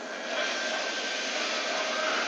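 Steady background hiss with a faint thin hum, no distinct events: room noise between spoken lines.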